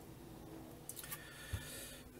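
Faint handling sounds on a laptop: a few light clicks and a soft knock about one and a half seconds in, as hands move from the touchpad onto the keyboard.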